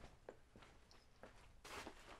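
Near silence with faint rustling of a cloth blanket being handled and hung up. There are a couple of soft clicks, and a brief louder rustle comes near the end.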